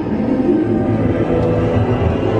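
Eerie, scary ride soundtrack music of held tones over a steady low rumble.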